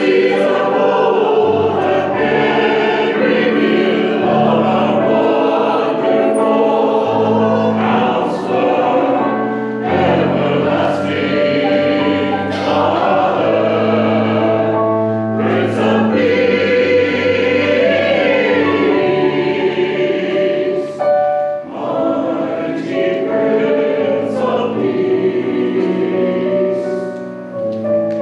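Church choir of mixed voices singing a Christian anthem, accompanied by piano.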